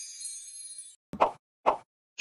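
Subscribe-button animation sound effects: a high shimmering tail fades out within the first second, then two short pops about half a second apart.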